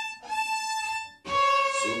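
Violin played with the bow, sustained notes on its upper strings: a held note with a brief break, then a short gap about a second in and a new, different note.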